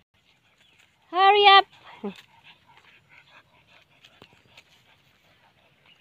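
A single loud, wavering cry from a farm animal about a second in, lasting about half a second, followed by a brief lower falling sound. After that come only faint scattered ticks and rustles of walking over dry, leafy ground.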